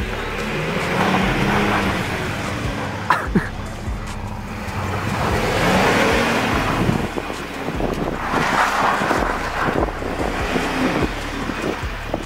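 Red Ford Ranger pickup's engine revving with its tyres spinning on snow as it does donuts, the sound swelling and easing off several times.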